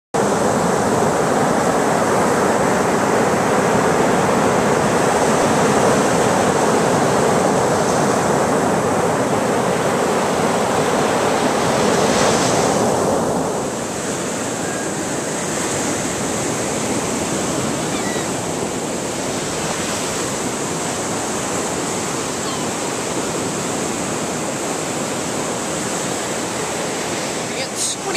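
Ocean surf breaking and washing up a sandy beach: a steady wash of noise that drops in level about halfway through.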